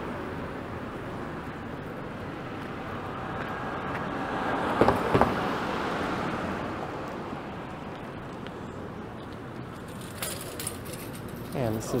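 Steady city street traffic, with a car passing close by that swells and fades about halfway through.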